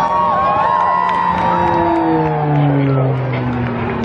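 Propeller drone of a Pilatus PC-7 Mk II turboprop aerobatic aircraft (Pratt & Whitney PT6A-25C) flying past. Its pitch falls over the second half as it passes.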